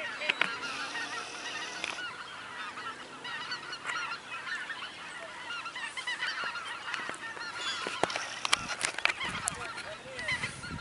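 A large flock of geese calling in flight, many overlapping honking calls throughout. Several sharp clicks or knocks near the end.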